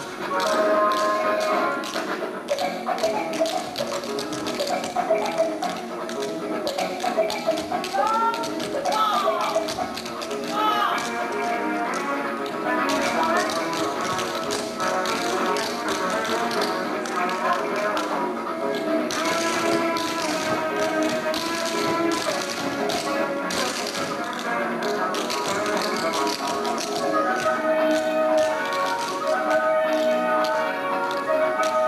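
Recorded dance music with a vocal line plays for a stage routine, with many quick, sharp taps over it from the dancers' shoes on the wooden stage.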